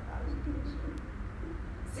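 Room tone: a steady low hum, with a few faint short low tones in the middle.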